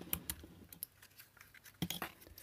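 Faint, scattered plastic clicks and scrapes as a small screwdriver tip works at the snap clips of a car clock-spring module's plastic housing, with a sharper click near the end.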